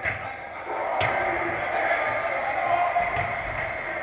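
Indoor five-a-side football hall: players' voices and music echo around the hall, with one sharp ball strike about a second in.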